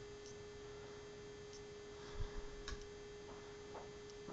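A faint steady hum at one constant pitch, with a few soft knocks and clicks about two seconds in from a hand moving the crane arm of a die-cast model truck.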